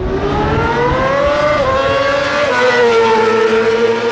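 A racing motorcycle engine at full throttle coming past, its pitch climbing, dropping sharply about one and a half seconds in, climbing again and dropping once more before holding steady.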